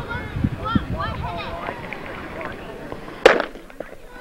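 A starter's pistol fires once, a little over three seconds in, starting a track race: a single sharp crack with a short echo, after voices talking.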